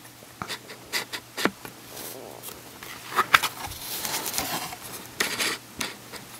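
A book being handled and opened, with soft rustling of its cover and pages and light taps and scrapes, a few louder rustles about three seconds in and again about five seconds in.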